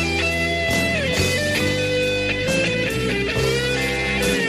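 Karaoke backing track of a rock power ballad in an instrumental break: a lead electric guitar holds long notes with smooth pitch bends over bass, keyboards and drums.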